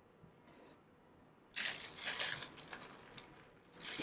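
Clear plastic bag crinkling as it is handled, starting about a second and a half in, dying down, then crinkling again near the end.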